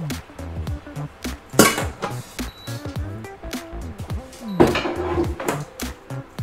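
Background music, with two loud metal clatters of a saucepan and spatula against a stainless steel mixing bowl as thick dough is scraped into it: one about a second and a half in, a longer one near five seconds.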